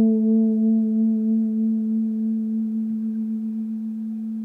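A single sustained A note on an electric bass guitar, played plainly with no vibrato and a little delay on it, held steady and slowly fading.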